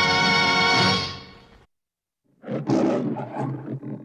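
The closing orchestral music holds a final chord and fades out in the first second and a half. After a brief silence, the MGM logo's lion roars in a few surges.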